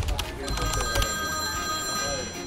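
Telephone ringing: a steady electronic ring of several pitches sounding together, starting about half a second in.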